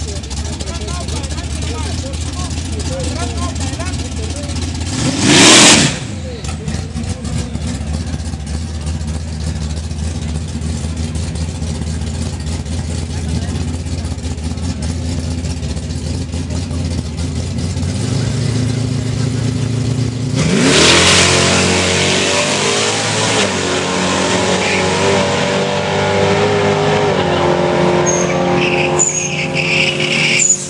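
Chevrolet Silverado drag truck's engine idling with a steady low rumble, with one sharp rev about five seconds in. About twenty seconds in it goes to full throttle, launching off the drag-strip start line, and the rising engine sound runs on for several seconds as it pulls away and fades.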